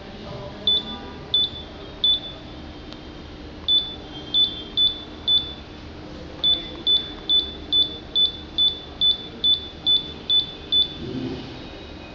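Short, high-pitched electronic beeps from the touch-screen lamp dimmer's transmitter, one for each stylus press on the up button, each press raising the lamp's brightness. A few spaced beeps come first, then a steady run of about a dozen, a little over two a second.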